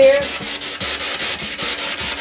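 Spirit box sweeping through radio stations: a steady hiss of static chopped into short pieces many times a second.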